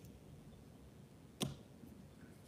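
Quiet room tone broken by one short, sharp click about one and a half seconds in.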